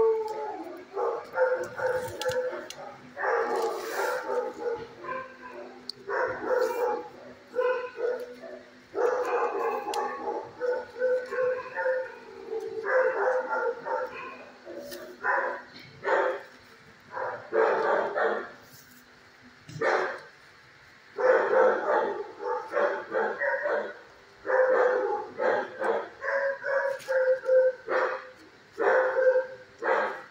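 Shelter dogs barking over and over in a kennel block, bark after bark with only short pauses.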